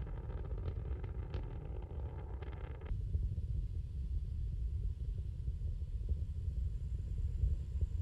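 Deep, steady rumble of Space Shuttle Columbia's solid rocket boosters and main engines during ascent, with the main engines throttled down through the region of maximum aerodynamic pressure. About three seconds in, the higher crackle drops away and only the low rumble remains.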